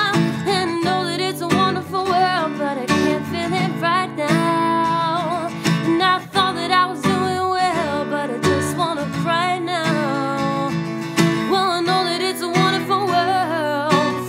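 A woman singing a pop ballad with long, held notes, accompanied by her own strummed acoustic guitar with a capo on the neck.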